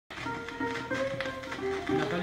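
Instrumental opening of a 1944 Fonit 78 rpm shellac record, a melody of held notes, with clicks from the record's surface.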